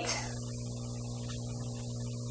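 A steady, low electrical mains hum that does not change.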